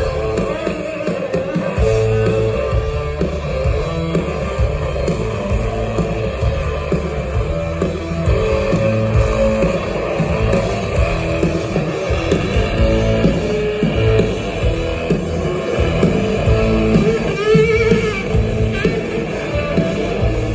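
A rock band playing live: electric guitar, bass and drums, heard from far back in the crowd.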